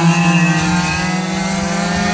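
Small high-revving engines of radio-controlled stock cars racing, a steady engine note whose pitch falls slightly as the cars pull away.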